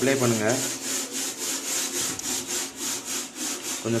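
Fish tank glass being scrubbed by hand, a fast, even rasping of about five strokes a second.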